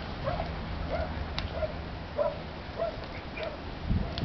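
Australian shepherd digging a hole in loose soil, giving a string of short whines about twice a second over a low scraping of earth.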